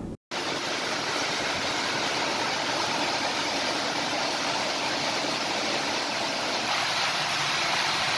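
Heavy rain falling steadily, an even rushing hiss that cuts in suddenly just after the start.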